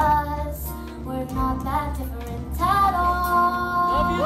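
A young girl singing a song live over backing music, ending on a long steady held note.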